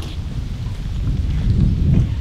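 Wind buffeting an outdoor microphone in a pause between sentences: a loud, uneven low rumble with no pitch to it.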